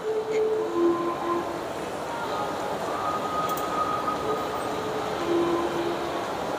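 Indoor shopping-mall atrium ambience: a steady hubbub of noise, with a few faint held tones drifting in and out.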